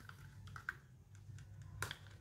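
Light plastic clicks and taps from a small plastic toy hair dryer being handled and turned in the hands. There are a few small clicks, with a sharper one near the end.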